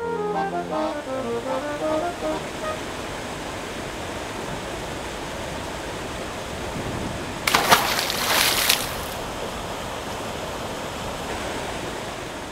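Water pouring from many small spouts down a stone cascade fountain: a steady rushing. About seven and a half seconds in, a louder rush of noise rises for about a second and a half, then drops back.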